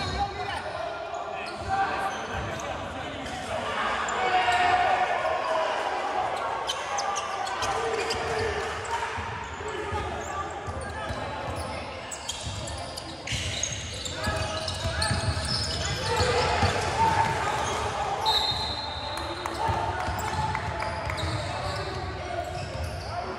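Basketball bouncing on a hardwood gym floor during play, with players' voices calling out, echoing in a large gym.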